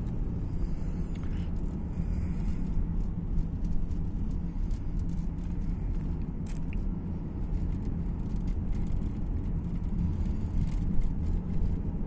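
Steady low rumble of road and engine noise inside a car's cabin while driving at low speed.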